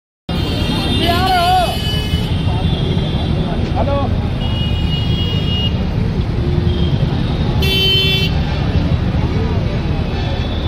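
Loud, steady din of street traffic and crowd with voices mixed in, broken by several short, high horn toots.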